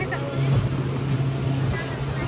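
Speedboat engine running steadily at speed, a constant low hum under the rush of wind and water from the wake.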